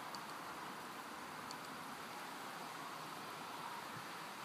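Steady faint hiss of background noise, with a couple of faint ticks near the start and about a second and a half in.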